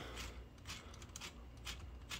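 A few faint clicks of Lego Technic plastic parts being turned and moved by hand while the grader's blade angle is adjusted through its linear actuator.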